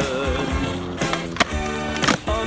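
Background music with a beat, over a skateboard rolling on concrete, with a few sharp clacks of the board about a second in.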